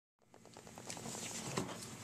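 Faint rustling with many light clicks over room tone, beginning just after a moment of dead silence.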